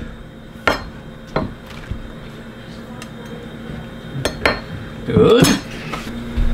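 Kitchen knife cutting chanterelle mushrooms on a wooden cutting board: a few separate, irregular knocks of the blade on the board. Near the end there is a louder, longer scraping sound as the blade scoops the chopped pieces off the board.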